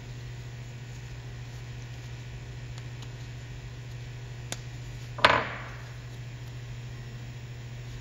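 Steady low electrical hum, with a faint tick and then a single sharp knock of a hard object on the wooden workbench a little after the middle, with a short ringing tail.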